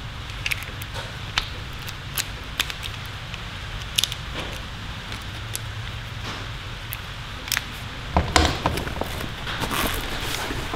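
Scattered light clicks and clinks from a ratcheting screwdriver and its metal bits being handled. About eight seconds in come a few heavier knocks and rustles as the fabric tool bag is moved.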